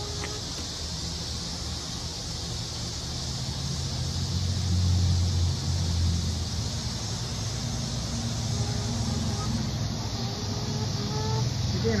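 A steady low engine rumble, like a vehicle or road traffic going by, swelling about halfway through and easing off, under a steady faint high hiss. A chicken's soft pitched calls come in near the end.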